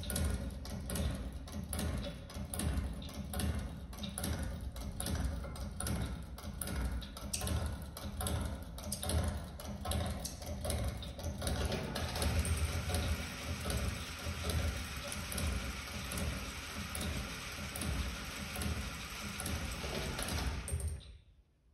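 Musique concrète sound: a dense crackling noise thick with clicks, settling into a steadier hiss about halfway through, starting and stopping abruptly.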